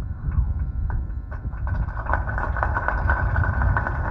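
Crowd applauding, the clapping growing denser about two seconds in, over a steady low rumble.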